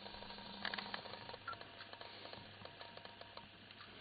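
Faint small clicks and rustles over quiet room tone, with a cluster of clicks about a second in and scattered light ticks after that.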